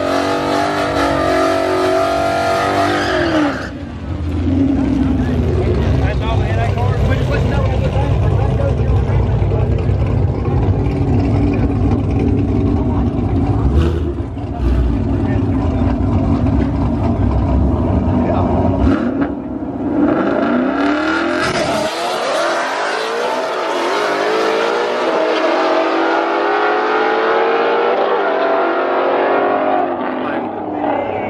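Ford Mustang GT's 5.0 V8 revving high during a drag-strip burnout for the first few seconds, then running with a heavy low rumble for about fifteen seconds. Later the revs rise and fall again in a series of glides.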